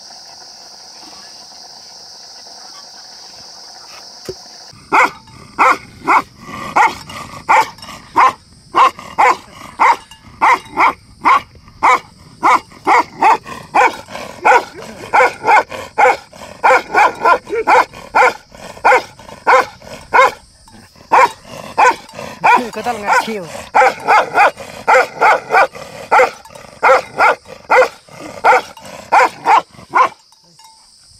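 A dog barking over and over, about two barks a second, starting about five seconds in and going on without a break. Before the barking, a steady faint hiss.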